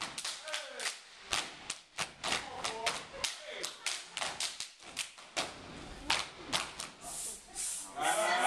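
Step team stepping in unison: sharp foot stomps on a stage floor mixed with hand claps and slaps, about four hits a second in a changing, syncopated rhythm.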